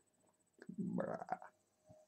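A short, low, rough throat sound from a man, lasting under a second, followed by a faint tick near the end.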